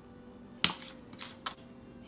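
Kitchen utensils being handled over mixing bowls while lemon zest is added to the yolk mixture: a sharp click about two-thirds of a second in, light rustling and scraping after it, and a second, smaller click about one and a half seconds in.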